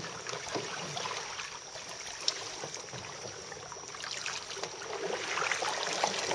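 Kayak paddles dipping and water trickling off the blades, a soft, steady splashing that grows a little louder near the end, with one light knock a little past two seconds in.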